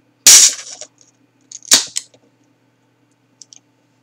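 A can of Murphy's Irish Stout being cracked open: the pull-tab pops and gas hisses out in a loud burst just after the start, followed about a second and a half later by a second, shorter sharp snap.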